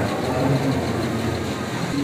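Steady background noise of a busy indoor shopping-mall hall, a continuous rushing hum with faint distant voices.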